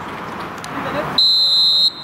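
Referee's whistle, one steady high blast of a little under a second, blown for the kick-off, over faint voices on the pitch.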